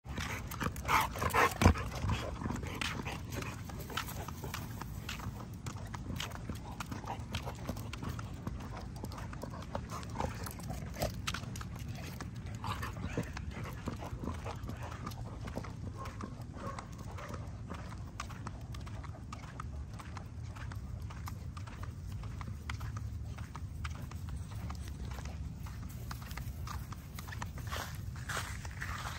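XL bully puppies running on concrete, their paws and claws making quick irregular clicks and scuffs, loudest about a second or two in, over a steady low rumble.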